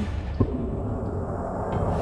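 Sound-design transition stinger: a single deep impact hit about half a second in that rings on as a low, dark rumbling drone.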